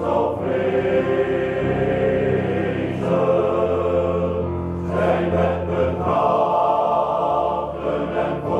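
Male voice choir singing sustained chords in harmony, with the bass part low underneath.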